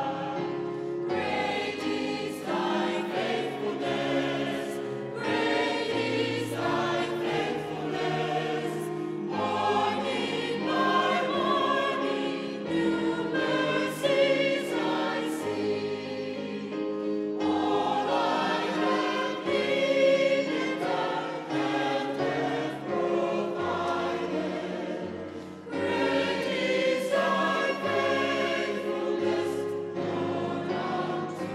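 Mixed choir of men and women singing together, in phrases with short breaks between them.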